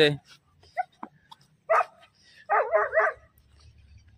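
A dog barking at cattle: one bark near the middle, then three quick barks in a row.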